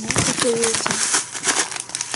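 Plastic zip-lock pouch crinkling and crackling as it is held open and turned in the hands.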